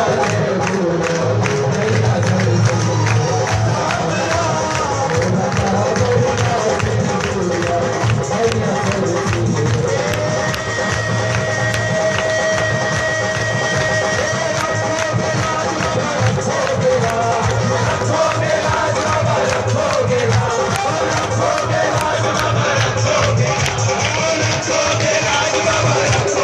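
Live Hindi devotional Shyam bhajan: a male singer on a microphone over amplified accompaniment with a steady, fast beat. About ten seconds in, the singer holds one long note for about four seconds.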